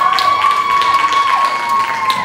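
Audience applauding and cheering, with long high-pitched whoops held over scattered clapping.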